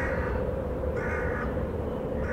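Two harsh crow-like caws, one at the start and one about a second in, over a steady low drone.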